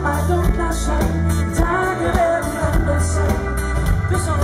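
A live pop-rock band playing, with a male lead singer over bass and drums.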